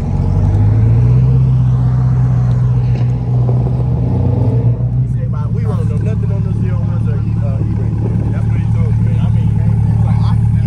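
A car engine idling with a steady low drone, and people's voices over it from about halfway through.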